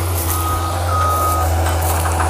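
Fecon forestry mulcher's engine running with a steady low drone while its backup alarm beeps twice, the second beep longer, signalling the machine reversing.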